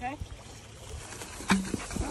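Footsteps and rustling through tall dry grass, with a sharp knock about one and a half seconds in.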